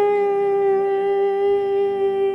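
A man singing one long note, held steady in pitch, in a congregational worship song.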